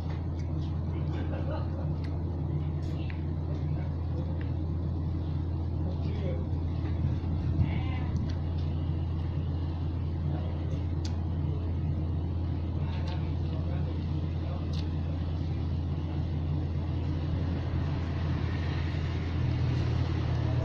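Steady low hum of an electric desk fan running, with occasional light clicks of a plastic spoon against a food container.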